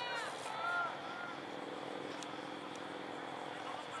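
Shouted calls on a soccer pitch in the first second, then a steady engine-like drone that holds until near the end.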